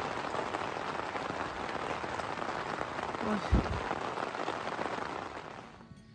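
Heavy rain falling, a steady hiss, with a short low thump about three and a half seconds in. The rain fades out near the end.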